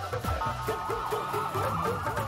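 Upbeat film-trailer soundtrack music, with a quick run of repeated notes in the middle over a beat.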